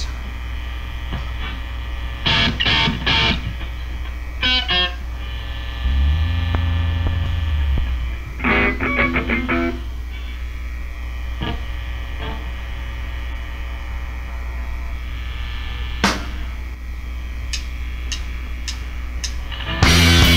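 Steady amplifier hum from a stage between songs, broken by a few short bursts of distorted electric guitar and one held low bass note about six seconds in. The full band comes in loud at the very end.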